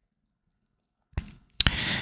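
About a second of silence, then trading cards being handled: a faint tap, then a sharp click and a short rustle as a card slides off the stack near the end.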